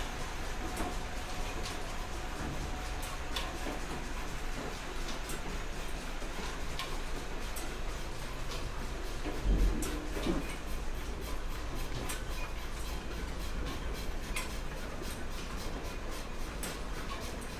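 Cotton power looms running in a mill weaving shed: a steady mechanical rumble with irregular sharp clacks, and one louder thump about ten seconds in.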